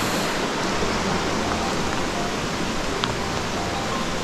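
A nearby mountain river running, a steady even rushing of water.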